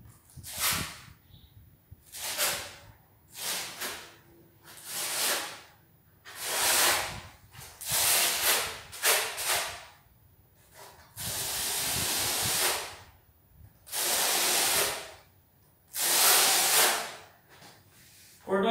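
Steel notched trowel scraping cement mortar across a concrete subfloor in about a dozen separate sweeping strokes, with one longer drawn stroke in the second half, combing the mortar into ridges for laying porcelain floor tile.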